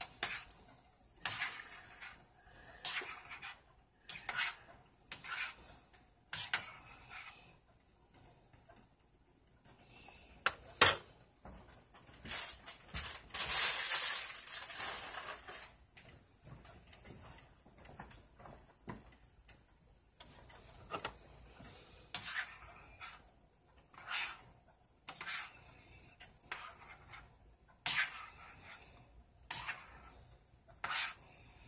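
A metal spoon stirring pasta in a stainless steel saucepan of boiling water, clinking and scraping against the pot in irregular strokes to keep the pasta from sticking. There is one loud clank about eleven seconds in and a brief hissing rush a couple of seconds later.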